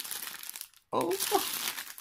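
Clear plastic packaging crinkling as it is handled, breaking off briefly a little under a second in, then crinkling again.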